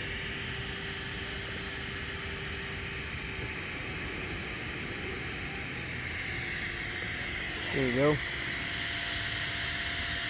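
TIG welding arc running steadily on the root pass of a 2-inch Schedule 10 stainless steel pipe: an even hiss that grows a little louder about six seconds in.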